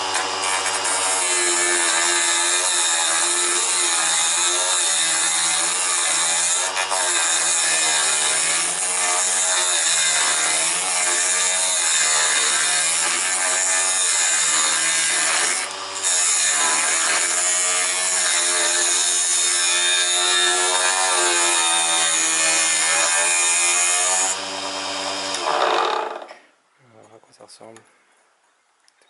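Small DC motor of a mini wood lathe running with a wooden workpiece spinning while a hand chisel cuts it; the motor's whine wavers up and down in pitch. The lathe shuts off about two seconds before the end.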